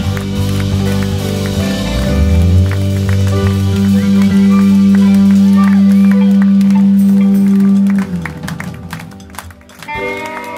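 A live rock band with bass, electric guitars, keyboard and drums holds its final chord, with cymbals ringing. The chord swells and then cuts off sharply about eight seconds in, marking the end of the song. Crowd voices and some scattered clapping follow.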